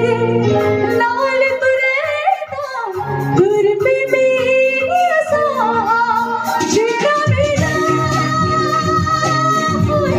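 A woman singing a song live into a handheld microphone, amplified, over backing music. Her voice moves through gliding, ornamented runs, then settles on a long held note in the second half.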